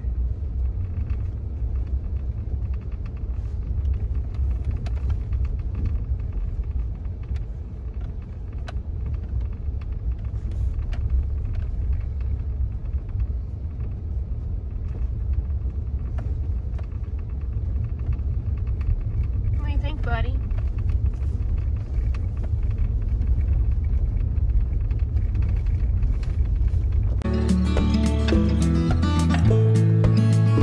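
Steady low rumble of a pickup truck driving, heard from inside the cab. A brief high whine rises and falls about two-thirds through, and music begins near the end.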